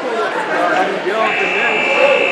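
Gym crowd of spectators and coaches shouting and chattering. About a second in, the scoreboard buzzer starts a steady high tone that marks the end of the first period of the wrestling bout.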